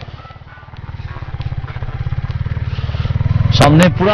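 Motorcycle engine running as the bike rides along, its rapid, even firing pulses growing steadily louder through the clip. A man's voice comes in near the end.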